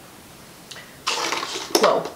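A loud, breathy rush of air from the woman, an exhale or a blow, starting about a second in and ending in a short, falling voiced sound.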